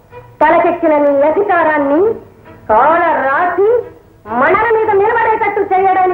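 A woman singing a film song: three phrases of long held notes with wavering ornaments, each separated by a short breath.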